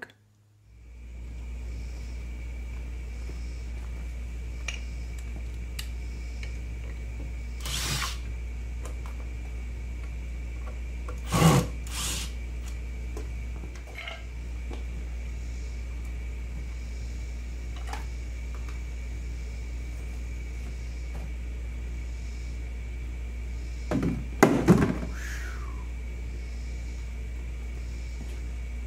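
Knocks and clunks of wooden boards and a plastic tub being handled while a fuming chamber is set up, the loudest about eleven seconds in and again near twenty-five seconds in. Under them runs a steady low rumble with a faint high steady tone.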